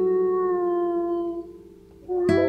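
A long howl, one sustained call that slides slowly down in pitch and fades out about a second and a half in.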